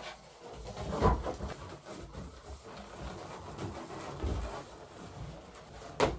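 Small latex balloons handled and twisted together, rubbing and squeaking against each other in irregular bursts, loudest about a second in.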